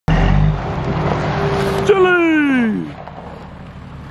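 Toyota Land Cruiser engine running with a steady low hum. About two seconds in, a whine slides steadily down in pitch for about a second, and the sound then falls to a much quieter low hum.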